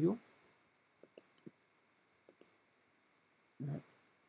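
Faint computer mouse button clicks: a click about a second in, two more shortly after, and a quick pair of clicks just past two seconds.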